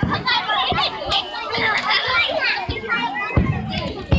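Many children's and adults' voices chattering and calling out together, overlapping. A low rumble comes in near the end.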